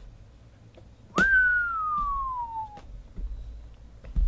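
A single long falling whistle, starting about a second in and sliding steadily down in pitch for about a second and a half before stopping.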